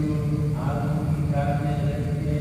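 Male plainchant in Latin: a low chanting voice holding each note, stepping to a new pitch about half a second in and again about a second and a half in.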